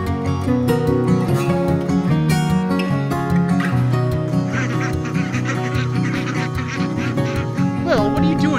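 Acoustic guitar background music throughout. From about halfway in, a flock of ducks quacks over it in a rapid run of calls.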